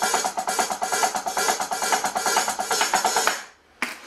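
Roland HD-1 electronic drum kit played in a fast, steady beat of evenly spaced strokes. The beat stops about three and a half seconds in, and a single hit follows just before the end.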